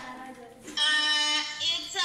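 A child's high voice calling out a long, drawn-out word, starting a little under a second in and held for about a second.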